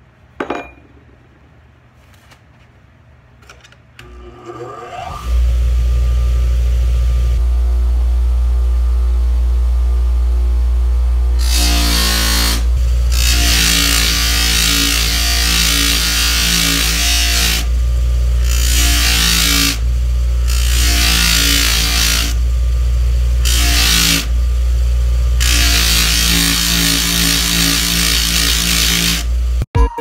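Bench grinder switched on, spinning up to a steady motor hum. Then the sole of a stripped forged steel golf iron is pressed against the 120-grit flap wheel in a series of passes: rough, hissing grinding that comes in stretches of one to four seconds, with short breaks between them, as the bag chatter is ground off.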